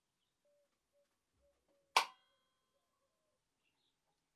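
A single sharp metallic click with a short ring, about halfway through, from the badminton restringing machine's tension head as it pulls tension on the string against a travel scale. Otherwise very quiet.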